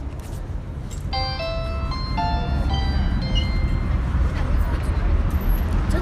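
A short electronic chime melody, a quick run of stepped notes lasting about two and a half seconds, over a steady low rumble of street and traffic noise. The rumble grows louder in the second half.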